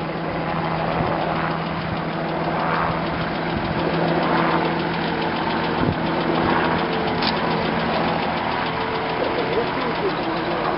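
Engine of a Volvo four-wheel-drive military vehicle running at low, steady revs as it crawls through deep mud close by.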